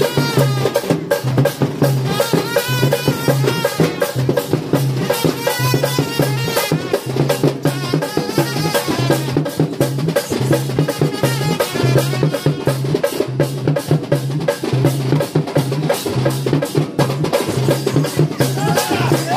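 Loud music driven by fast, dense drumming, with a low beat about twice a second and a wavering melody above it.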